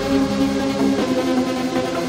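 Scouse house track: held synthesizer chords sustained with no drum beat.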